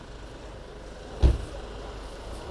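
A single short thump about a second in, over low, steady background noise.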